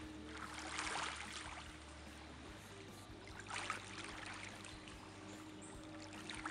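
Small waves lapping gently at a lake shore, with soft splashing swells about a second in and again around three and a half seconds, over a faint steady low hum.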